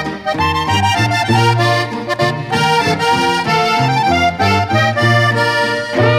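Accordion playing an instrumental passage of a Mexican ranchera/norteño song over a bass line that steps between notes about twice a second.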